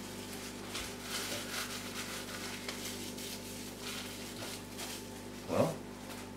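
Cling film rustling and crinkling as it is pulled off a cardboard tube by hand, over a steady low hum, with a short vocal murmur near the end.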